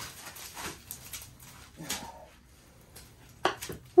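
Cured fibreglass shell crackling and snapping as it is wrenched off a foil-taped mould, with a short grunt of effort about two seconds in and a loud sharp crack near the end.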